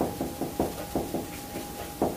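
Marker pen on a whiteboard while words are written: a quick, irregular run of light taps and ticks as each stroke starts and stops.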